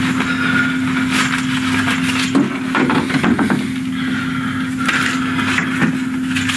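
Handling noise in a closet: rustling and scattered knocks as things on a shelf are moved about, over a steady low hum.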